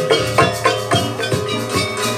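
Javanese gamelan accompanying a jaranan dance: ringing metal keyed instruments and drums struck in a quick, even rhythm of about four strokes a second.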